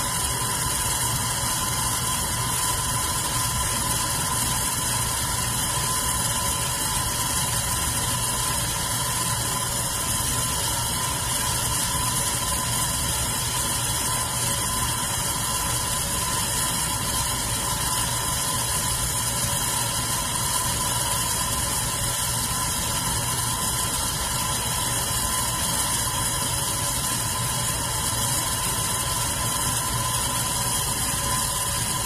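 Red metal electric fan running steadily: an even whirring hiss of moving air over a constant motor hum with a steady whine, unchanging throughout.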